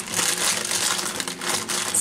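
Crinkling of a strawberry gelatin powder packet as it is shaken out over the pan, a continuous run of fine crackles.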